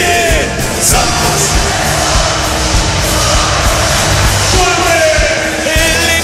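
Live Bolivian morenada played by a brass band, with repeated crash-cymbal hits and a steady bass-drum beat under the full band. A long, slightly falling note sounds about five seconds in.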